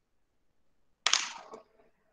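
A single sharp crack about a second in, loud at the start and dying away within half a second.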